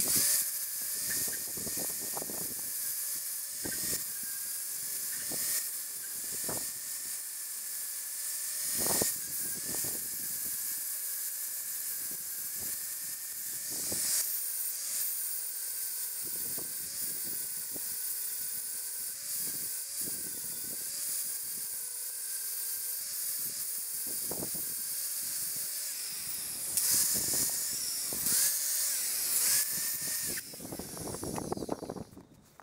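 Angle grinder running and grinding down a weld bead on a steel bracket, with a steady high whine and a hissing rasp as the disc bites, broken by many short louder bites. The footage is sped up four times.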